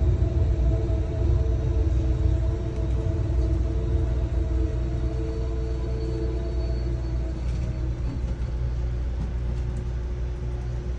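Amtrak passenger train heard from inside the car as it rolls slowly through a station: a steady low rumble with a few steady humming tones, most of which fade out in the second half.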